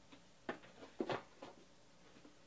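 Trading cards being handled and flipped through: a few soft taps and rustles, the loudest about a second in.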